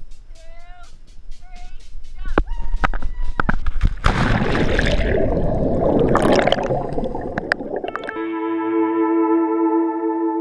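A GoPro in its dive housing plunges off a cliff: rushing noise builds for a couple of seconds, then a loud splash as it hits the sea about four seconds in, followed by several seconds of churning underwater bubble noise. Ambient music with long held notes comes in near the end.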